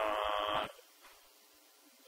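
A man's drawn-out "um" hesitation through a microphone, held for about two-thirds of a second, then a pause with only faint room hiss.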